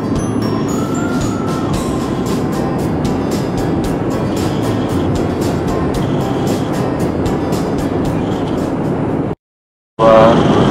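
Background music with a steady beat, cutting off abruptly to silence shortly before the end.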